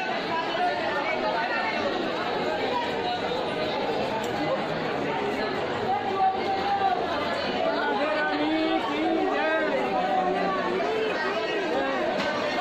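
Crowd chatter: many people talking at once in Hindi, overlapping voices with no single speaker standing out.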